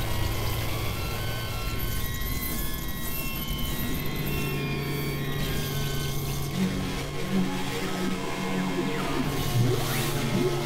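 Experimental electronic synthesizer drone music: steady low droning tones under a noisy, hissing texture, with scattered short high blips. About two-thirds of the way through, a pulsing note joins a little above the drone.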